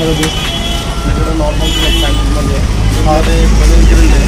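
Low rumble of road traffic, growing louder near the end, with voices talking over it.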